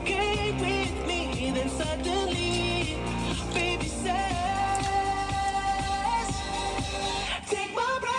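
Pop song on a radio broadcast: a singing voice over a steady, bass-heavy beat. The music drops out for a moment near the end.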